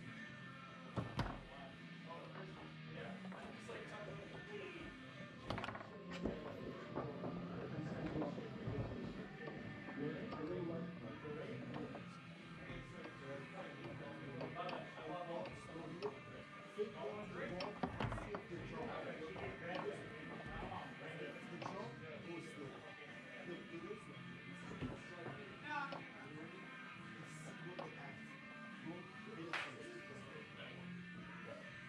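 Background music and voices, with sharp knocks from a foosball game every few seconds: the ball being struck and the rods banging against the table. The loudest knocks come about a second in and again near the middle.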